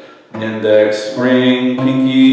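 Acoustic guitar picking single notes of a G-shape movable major scale, three notes in turn, each ringing on into the next; it starts about a third of a second in.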